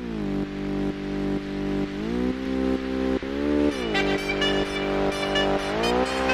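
Motorcycle engine, a Royal Enfield Bullet's, running and being revved: the pitch rises about two seconds in, drops back a second and a half later and climbs again near the end. A music beat comes in about four seconds in.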